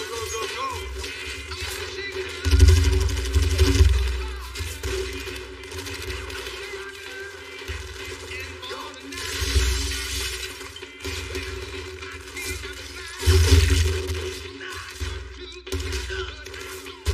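Film soundtrack: a music score with a steady drone, broken by several sudden loud crashing hits with a deep boom, the biggest about two and a half seconds in, near four, near ten and near thirteen seconds.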